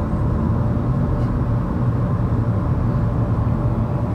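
Steady road and engine rumble inside a moving Honda Civic's cabin, low and even throughout.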